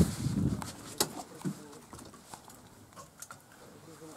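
Low rumble of wind on the microphone dying away in the first half second, then a quiet stretch of scattered small clicks and knocks, the sharpest about a second in.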